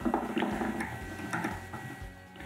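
A few light clicks and taps from handling fly-tying tools at the vise.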